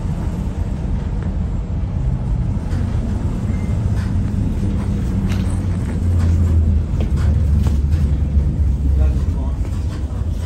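Tyne and Wear Metrocar 4073 heard from inside the car as it runs, a steady low rumble with scattered clicks and rattles. The rumble swells about six seconds in and eases near the end.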